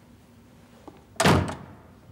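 A door shutting: a faint click, then a single loud thud a little over a second in that quickly dies away.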